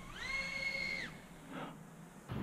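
Motors and props of a 2-inch micro brushless quadcopter (DYS BE1104 7500kv motors on a 3S pack) whining up at full-throttle punch-out. The whine rises quickly in pitch, holds steady for about a second, then cuts off.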